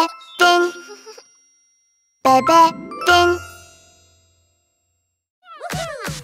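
Short musical sting of bright, bell-like chime notes in two brief bursts separated by a pause, the second burst with a rising slide. Near the end a voice begins.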